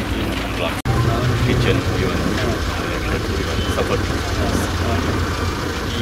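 People talking at a site, with a steady low rumble underneath; the sound drops out briefly about a second in.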